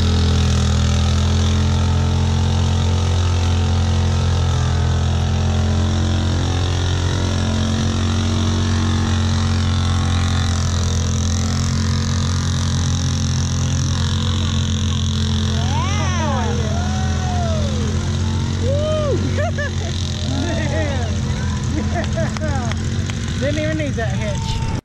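Lifted Wheel Horse mud mower's 18 hp Vanguard V-twin engine, built with stiffer valve springs and advanced timing, running loud at a steady high speed in a mud bog. Voices call out over it in the second half.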